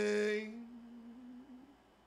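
A man's voice holding one sung note a cappella, steady in pitch. It is loud for the first half-second, then goes softer and thinner, wavers slightly upward and trails off about a second and a half in.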